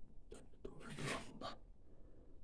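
Soft whispering: a few short, breathy bursts in the first second and a half, with no clear words.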